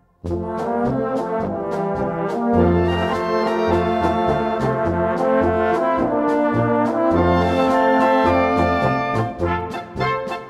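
Bohemian-style wind band of trumpets, trombones, horns and tubas starting an instrumental polka about a quarter-second in, playing loudly with a bouncing bass line under sustained brass chords.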